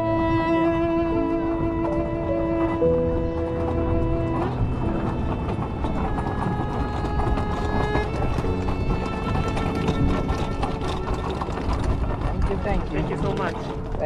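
Solo cello, bowed in long held notes that grow fainter and less distinct after about four seconds, with short knocks and people's voices coming in near the end.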